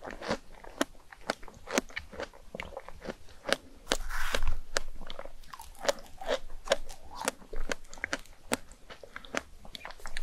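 Close-miked chewing of fresh strawberries with chocolate whipped cream: a steady run of small, wet, crunchy clicks from the mouth, with one louder, longer noisy stretch about four seconds in.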